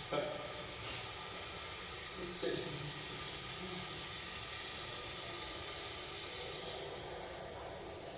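Steady hiss, the background noise of a television's soundtrack picked up through a camera microphone, with two brief faint low sounds near the start and about two and a half seconds in.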